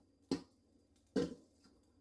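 Two brief scrapes of a spatula against a stainless steel mixing bowl as cooked vegetables are pushed out of it, one about a third of a second in and one just past a second in.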